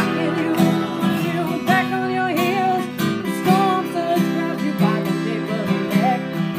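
A woman singing while strumming an acoustic guitar in a steady rhythm.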